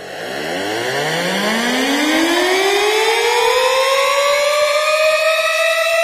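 A siren-like rising tone used as the intro build of an electronic dance music set: it starts suddenly, sweeps up in pitch and levels off into a steady high wail while growing louder.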